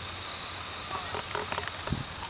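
Faint outdoor night ambience: distant voices and a few light clicks over a steady high-pitched whine and a low hum.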